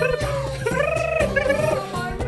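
Background music: a melody that dips and rises over a bass line.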